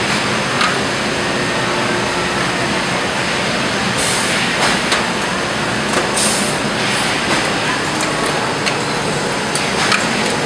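Steady, loud machinery noise of a dry-cleaning plant, with several short hisses in the middle, the strongest about six seconds in.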